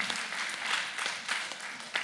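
Audience applauding, an even patter of many hands clapping.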